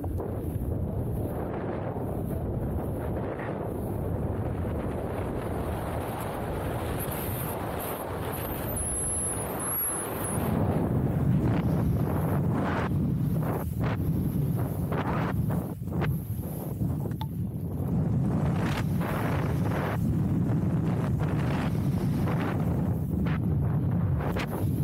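Wind rushing over the camera's microphone as a skier speeds down a powder slope, with skis running through the snow. About ten seconds in it becomes louder and deeper, with short swishes from the turns.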